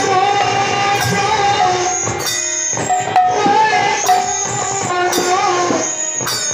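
Bengali devotional kirtan music: a melody of long held notes with shimmering hand percussion, pausing briefly a little past the middle.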